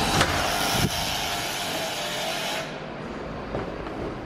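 Steady rush of street traffic noise, with a couple of short knocks as a metal door handle is pressed and the door opened. About two and a half seconds in the rush drops away suddenly, leaving quieter room sound.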